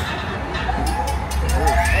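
Roller coaster train rumbling along the track with riders' voices. Near the end a smooth rising whine begins, typical of the coaster's magnetic launch motors spinning up as the train enters the launch section.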